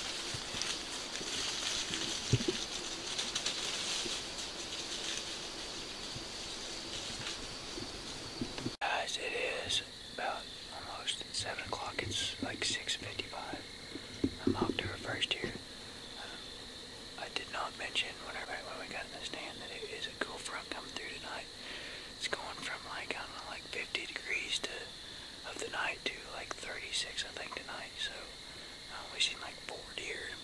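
A man whispering quietly in short, broken phrases. This follows about nine seconds of steady woodland hiss, and a faint, steady high-pitched tone runs underneath throughout.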